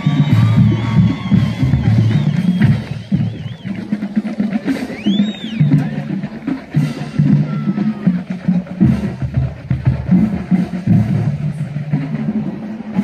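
Band music with drums and low sustained notes, played loud in a stadium, with a single high whistle that rises and falls about five seconds in.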